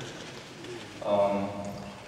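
A man's voice through a handheld microphone in a lecture hall: a short pause, then a drawn-out hesitation sound on one steady pitch, starting about a second in.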